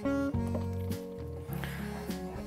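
Background music: held notes that change pitch every few tenths of a second.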